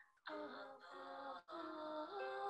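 A woman singing slow, long-held notes that step from one pitch to the next, broken twice by short pauses for breath.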